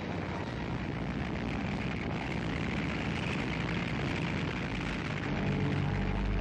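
Steady drone of aircraft engines. Near the end a deeper, lower engine hum joins in.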